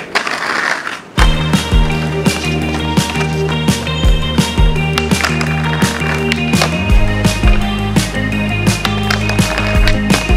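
Skateboard wheels rolling on concrete paving for about a second. Then music with a steady beat comes in and is the loudest sound, with a skateboard trick on a stone ledge underneath it.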